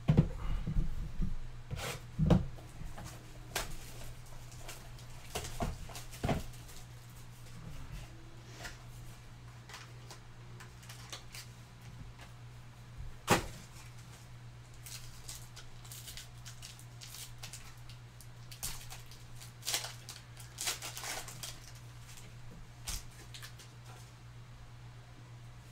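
Hands opening a small cardboard trading-card box and handling its contents: scattered knocks, taps and rustles of card stock, loudest in a cluster over the first couple of seconds, over a steady low hum.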